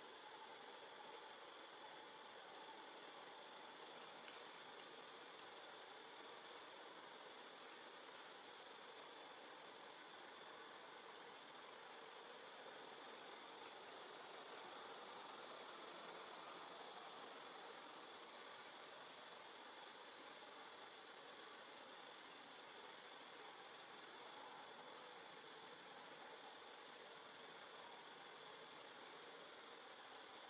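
Faint, steady high-pitched drone of insects. It swells a little in the middle, where a second, pulsing insect call joins for several seconds before dropping out.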